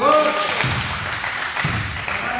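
A short shout at the start, echoing in the gym hall, over general noise from the court, with one basketball bounce on the wooden floor near the end.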